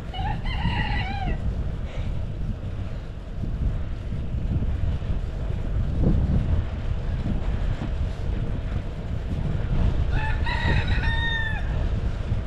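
A rooster crowing twice, once at the start and again about ten seconds in, each crow about a second and a half long, over a steady rumble of wind on the microphone from riding.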